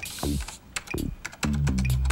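Quick, irregular computer-keyboard typing clicks over background music. The music's low notes slide downward, then settle into a held low chord about one and a half seconds in.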